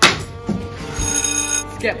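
A sharp thump at the start, then about a second in a short, bright ringing that lasts about half a second, over background music.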